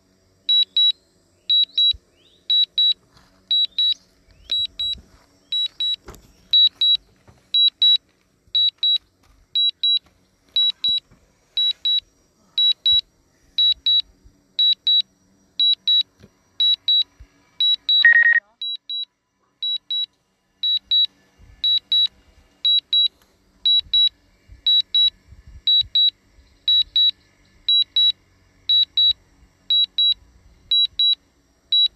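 An electronic alarm beeping loudly and steadily, a high double beep repeated about once a second. About two-thirds of the way through, a single lower tone slides downward.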